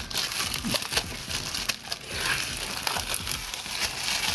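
Plastic shrink wrap crinkling and crackling as it is torn and peeled off a sealed card portfolio, a dense run of small sharp crackles.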